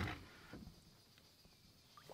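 Quiet, with a faint short rustle right at the start and a few soft, faint knocks, as of a fish and gear being handled in a small boat.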